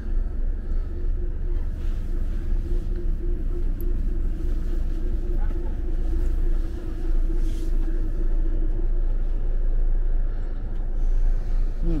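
Coach engine idling, heard from inside the passenger cabin as a steady low rumble, with a steady hum over it that fades out near the end.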